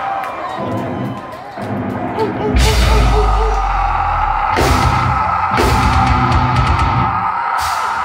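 Live metalcore band launching into a song: crowd noise at first, then about two and a half seconds in the full band comes in loud with heavy guitars and drums, hitting hard again several times.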